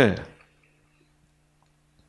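A man's short spoken "네", then quiet with a faint steady electrical hum and a faint click from a computer mouse as the on-screen text is scrolled.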